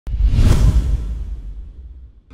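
A whoosh sound effect for an animated logo reveal, with heavy bass: it starts abruptly, is loudest about half a second in, then fades away.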